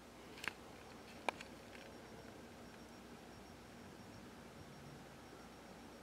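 Faint steady room hiss with two sharp handling clicks, about half a second and a second and a quarter in, and a smaller tick just after the second.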